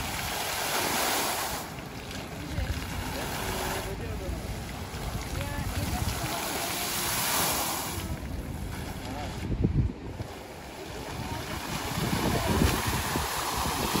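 Plaza fountain jets rushing and splashing into a shallow pool, a steady hiss of water that swells and fades as the jets rise and drop, thinning about ten seconds in before building again. Gusts of wind rumble on the microphone.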